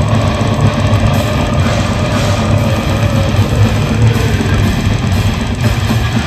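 Death metal band playing live at full volume: distorted guitars, bass and fast drumming in a dense, unbroken wall of sound with heavy low end.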